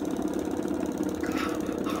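Self-balancing hoverboard shuddering under a rider, a steady fast buzzing rattle with an even rhythm: the board is vibrating rather than holding still.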